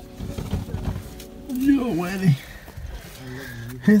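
A man's voice making short wordless sounds of effort while squeezing down a narrow stone stairway: a sliding note about two seconds in and a held hum near the end. Underneath is low rumbling from his movement and the camera being handled.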